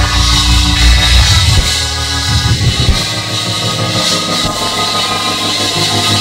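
Live church band music: sustained chords held over a bass line that shifts pitch a couple of times.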